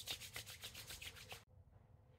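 Palms rubbing moisturizing lotion between them in quick back-and-forth strokes, about eight a second, which cut off abruptly about one and a half seconds in.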